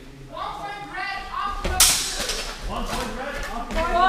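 Voices talking in an echoing sports hall, with one sharp crack of a sword strike about two seconds in as the fencers engage.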